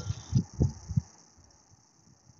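Three low, dull thumps in the first second, then only a faint steady hiss.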